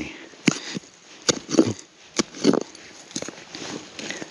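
Hand-digging in loose, weathered soil and gravel: irregular scrapes of dirt being raked aside, with a few sharp clicks of small stones knocking together.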